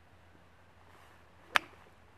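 A golf club swinging through and striking a golf ball made of ice: a faint swish of the swing, then one sharp crack of the strike about one and a half seconds in.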